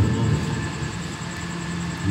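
A pause in a boy's Quran recitation through a hall's loudspeakers: his voice dies away in the room's echo over about half a second, leaving a steady low background hum.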